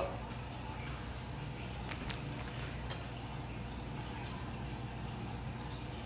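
Steady low background noise with a hum underneath, broken by a few faint clicks about two and three seconds in.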